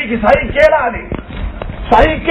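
A man speaking in Tamil, delivering a religious lecture, with a couple of dull low thumps about halfway through.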